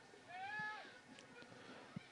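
A single faint, high-pitched shout from a distant voice, one call of about half a second that rises and then falls in pitch.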